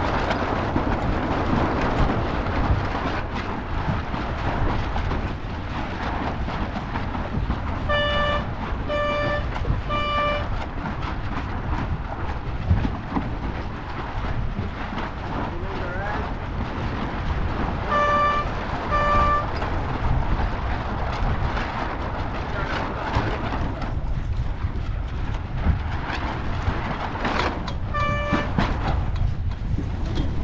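Wind buffeting the microphone and water rushing past the hull of a small sailing dinghy under way. Short beeps sound three times about a second apart, twice about eight seconds later, and once near the end.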